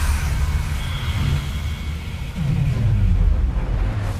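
Deep rumbling sound effect in an intro sequence, with a downward sweep in the bass a little past the middle.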